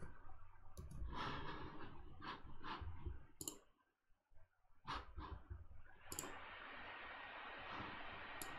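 A few sharp, separate computer mouse and keyboard clicks, with soft breathing between them. A steady faint hiss sets in past the middle.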